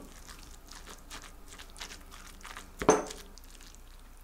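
Wooden spoon stirring and mashing rice with tuna and mayonnaise in a ceramic bowl, giving soft sticky squishes and light scrapes. There is one louder knock of the spoon against the bowl a little before the end.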